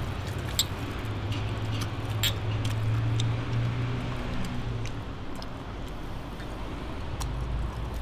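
A low, steady engine-like hum that swells in the middle and then drops lower, with a few light clicks of tableware and glasses.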